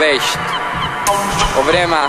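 Electronic dance music from a house mix: a steady beat with short pitched sounds that slide downward in pitch, one at the start and another near the end.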